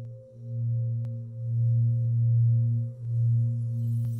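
A low, sustained musical drone with a few faint overtones, swelling and dipping every second or so, like a singing-bowl-style meditation tone. A faint high shimmer comes in near the end.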